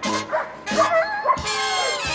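Brassy, swing-style film music with a dog barking and yipping over it.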